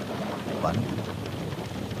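A thunderstorm: steady rain with a low rumble of thunder.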